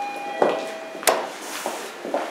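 Mitsubishi passenger elevator's arrival chime: two short tones, the second lower. About a second in comes a sharp clack, with a hiss after it.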